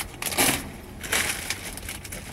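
Product packaging rustling as it is handled, in two short bursts: boxes being set down and the next one picked up.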